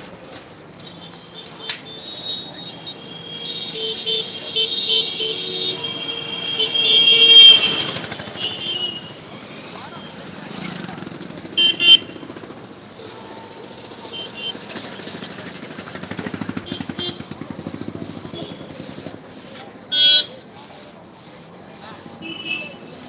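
Street noise: people's voices mixed with vehicle horns and motorcycles, a loud stretch of shrill, pitched sound in the first third, and short loud horn toots about twelve and twenty seconds in.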